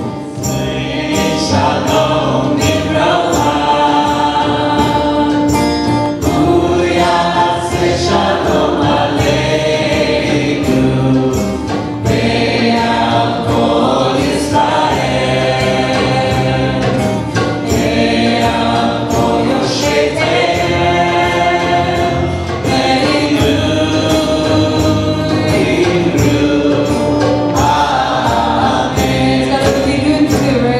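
A congregation singing together in long sung phrases, accompanied by a strummed acoustic guitar.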